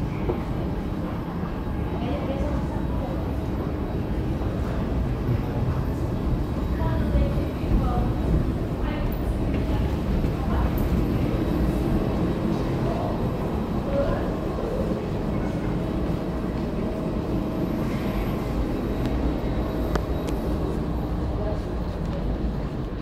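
A steady low rumble of background noise with faint voices here and there.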